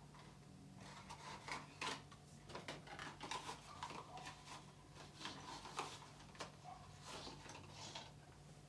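A small reed diffuser box and its sticks being handled and opened: irregular light taps, clicks, scrapes and rustles of packaging.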